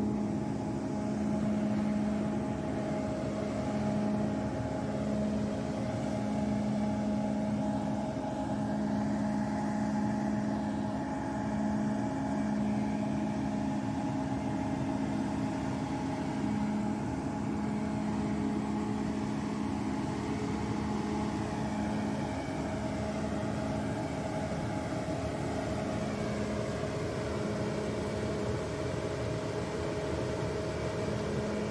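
Self-propelled grape harvester running, a steady machine drone with a low hum that pulses on and off every second or two.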